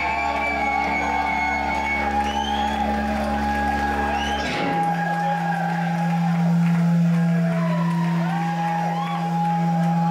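Live electric guitars and bass droning through the amplifiers on steady held notes with no drums. The low note cuts to a higher one about four and a half seconds in, while the crowd shouts and whoops.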